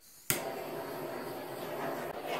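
Small handheld torch lit with a sharp click, then hissing steadily as it is passed over wet acrylic paint to raise cells and pop bubbles.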